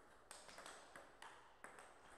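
Table tennis rally: the celluloid-type ball striking the players' rubber paddles and bouncing on the table, as faint, sharp ticks several times in quick succession.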